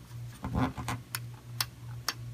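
Scattered light clicks and taps, about five in two seconds, as a graphics card is handled and wiggled into line with a PCI slot in a metal server chassis, over a steady low hum.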